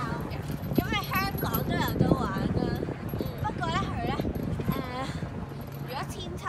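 Playground swing hangers squeaking as two swings move, a wavering high squeak that comes back every second or so in time with the swinging, over low knocks.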